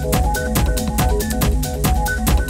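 Techno playing through a DJ mix: a steady, fast beat of kick drum and hi-hats under a bass line and short repeating synth notes.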